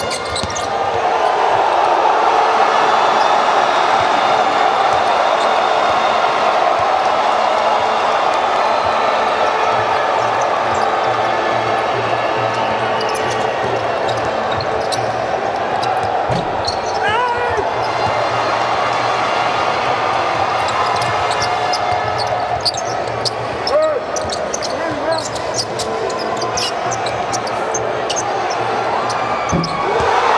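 Live basketball game play in an arena: the ball being dribbled on the hardwood floor and short sneaker squeaks over a steady murmur of the crowd.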